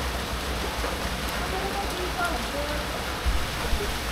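Heavy rain pouring down in a steady hiss, with a low rumble underneath.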